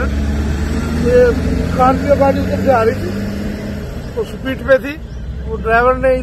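A man's voice speaking in short phrases over a steady low rumble of road traffic, which fades about four seconds in.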